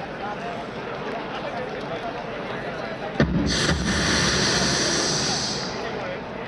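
Crowd of runners and spectators chattering at a road-race start line; about three seconds in, one sharp bang, the start signal, is followed by a loud rushing hiss lasting about two seconds.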